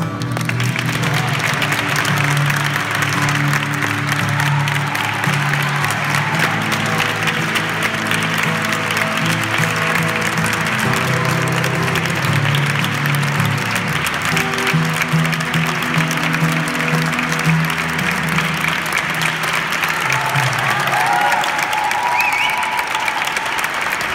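Audience applauding steadily as a song ends, over sustained low notes of the closing music that shift in pitch a few times. Near the end a few short whistles rise above the clapping.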